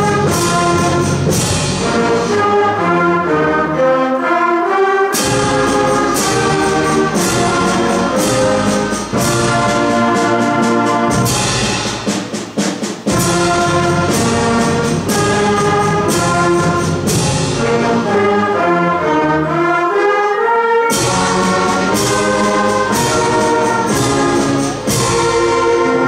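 Sixth-grade concert band, in its first year, playing chords on brass, clarinets and flutes together. The low instruments drop out briefly, and the full band comes back in with a strong entry about five, thirteen and twenty-one seconds in.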